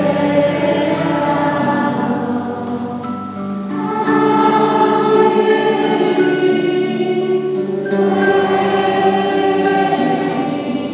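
A choir of children and teenagers singing a slow song together, with long held notes that change every few seconds.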